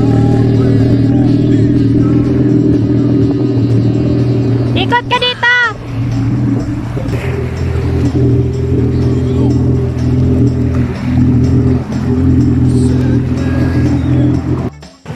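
Yamaha jet ski engine idling and running at low speed, a steady low drone. About five seconds in, a short burst of high rising-and-falling tones cuts across it while the engine sound briefly dips.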